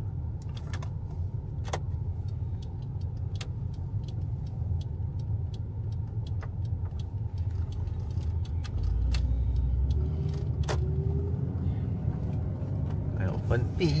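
Low, steady cabin rumble of an old camper van's engine and tyres at slow driving speed, deepening about nine seconds in as the van pulls away, with scattered light clicks and rattles from inside the cab. The cabin is poorly sound-insulated.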